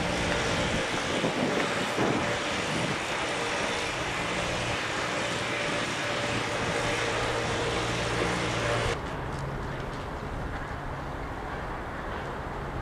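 Outdoor ambience: a steady rushing noise over a low, engine-like hum, in the manner of distant traffic. The rushing hiss cuts off abruptly about nine seconds in, leaving only a quieter low rumble.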